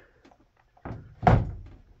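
A soft knock, then a single loud thump a little over a second in that dies away quickly.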